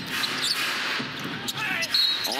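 Arena game sound during live basketball: steady crowd noise, with the ball being dribbled on the hardwood court.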